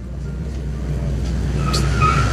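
A motor vehicle's engine running steadily close by, its low hum slowly growing louder.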